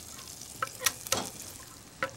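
Smoked bacon and an onion half frying in olive oil in a saucepan: a low, steady sizzle with a few sharp crackles.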